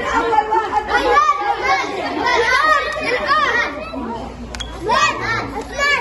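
Several children's voices talking and calling out over one another, an overlapping chatter of kids.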